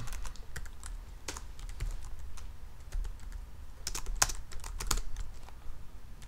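Typing on a computer keyboard: scattered keystrokes with a quicker flurry of keys about four seconds in.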